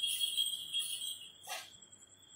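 A cluster of small jingle bells, the xóc nhạc bell rattle shaken in a Then ritual, jingling and trailing off, with one last brief shake about one and a half seconds in.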